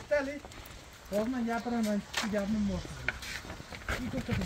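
A person's voice speaking in short phrases, with a brief lull early on and again near the end.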